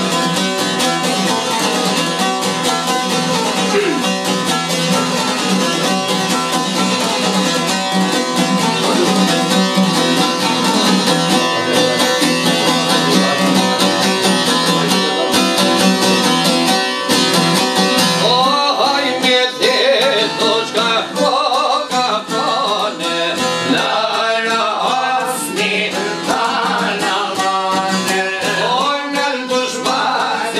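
Albanian folk music on plucked çifteli lutes: a busy instrumental passage of quick plucked notes, with a man's ornamented singing coming in a little past halfway.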